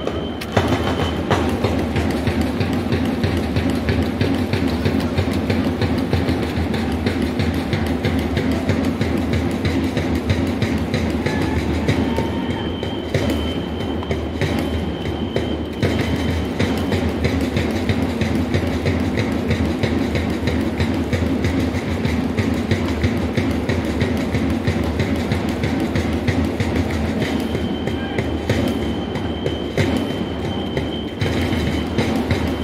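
Baseball cheering section playing in the stands: taiko drums and a snare drum keeping a fast, steady beat under the crowd of fans, with an electronic whistle sounding a held high note in spells about twelve seconds in and again near the end.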